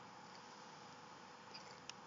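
Near silence: the hushed room tone of a large, nearly empty hall, with a steady faint hiss and a couple of faint sharp clicks near the end.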